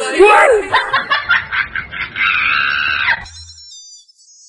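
A woman's exaggerated comic crying: a short moan, then choppy sobbing gasps and a drawn-out wail that stops abruptly about three seconds in. Faint high tinkling tones follow near the end.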